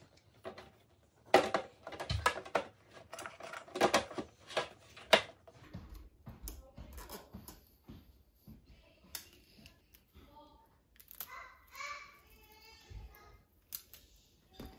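Plastic parts of a Greenote AP10 air purifier being handled and fitted together, the HEPA filter going into the housing: a quick run of clicks and knocks over the first five seconds or so, then sparser, quieter handling.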